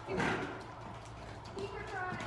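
A pony snorts once, a short breathy blow through the nostrils about a quarter second in. Faint voices follow near the end.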